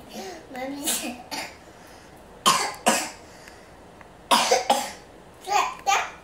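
A person coughing: two coughs a little before halfway, then a quick run of about three more a second and a half later.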